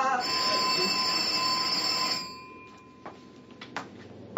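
Electric doorbell ringing steadily for about two seconds, then stopping, followed by a couple of faint clicks.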